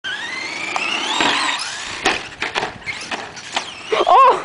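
Radio-controlled monster truck's motor whining as it speeds up, the pitch climbing through the first second or so. Then sharp knocks and clatter about two seconds in, with another knock near the end, as the truck flips and hits the ground.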